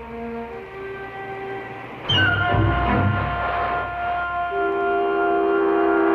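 Film-score music: soft held notes, then about two seconds in a much louder entry of held chords over low, evenly repeated beats.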